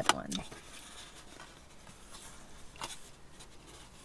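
Faint rustling and handling of a paper-lined cardboard burger box, with a few soft clicks, in a quiet car cabin.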